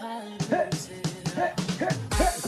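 Electronic dance music in a breakdown with the bass drum dropped out: short pitched stabs in a steady rhythm.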